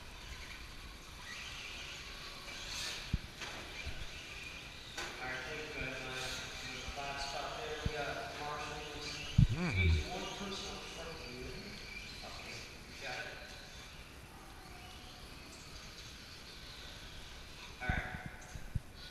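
Indistinct voices of other people talking over the steady background of electric RC short-course trucks running on an indoor clay track, with a single loud thump about nine and a half seconds in.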